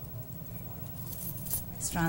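A steady low hum with a few faint clinks near the end.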